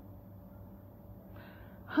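A woman's quick intake of breath through the mouth in a short pause of an unaccompanied song, taken near the end as she readies the next sung line.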